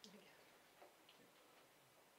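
Near silence: room tone with a few faint, brief clicks.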